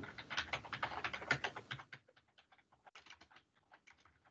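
Computer keyboard typing: a quick run of key clicks that thins out to a few scattered clicks about halfway through.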